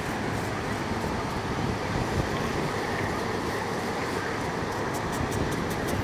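Steady rushing outdoor noise of a beach, with no distinct foreground sound.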